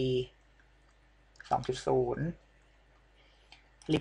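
A few faint computer mouse clicks, spread a second or two apart, between short stretches of speech.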